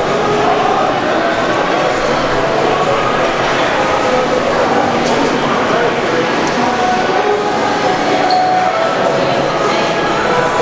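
Steady babble of many voices in a large, echoing indoor hall, with no single voice standing out.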